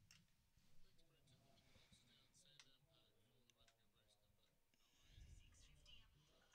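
Near silence: faint background tone with a few soft clicks and faint, indistinct voices.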